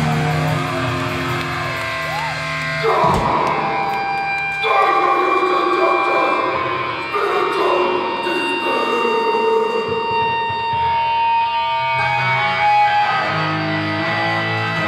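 Hardcore punk band playing live, electric guitars and bass over the club PA, with long held, ringing guitar notes. The low end drops out about three seconds in and comes back near the end.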